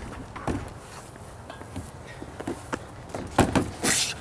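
Scattered footsteps, knocks and scuffs of people climbing and jumping on a playground climbing frame, with a louder cluster of thumps near the end as one jumps off toward the wood-chip ground.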